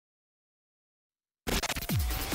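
Dead silence, then about one and a half seconds in electronic intro music cuts in abruptly, with a falling bass sweep near the end.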